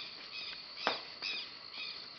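Southern lapwing (quero-quero) giving short, repeated high calls, about five in two seconds, the sharpest and loudest about a second in. The calls sit over a steady high trill of crickets.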